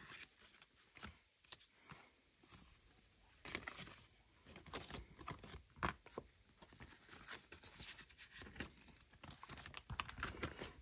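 Faint rustling and crinkling of a clear plastic binder pocket and paper being handled, with scattered small clicks and taps.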